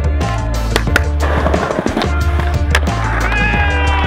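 Skateboard wheels rolling over stone plaza tiles, with sharp clacks of the board, under music with a heavy repeating bass beat.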